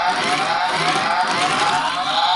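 Electronic police-siren sound effect from the Delta Runner 1 toy car's built-in speaker: a fast, repeating rising wail that plays while the toy's siren lights flash.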